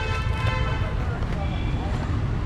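Busy street ambience: a steady low rumble of road traffic, with faint voices in the background.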